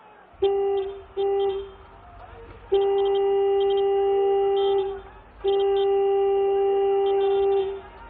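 A vehicle horn honking at one steady pitch: two short honks, then two long blasts of about two seconds each.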